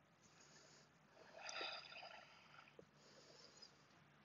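Faint breathing of a woman holding a full wheel backbend: one longer breath about a second in, and a weaker one near the end.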